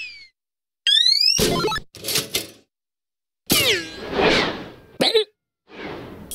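Cartoon sound effects: a short rising squeaky whistle about a second in, then two thumps. After a pause comes a longer falling glide with a rushing noise.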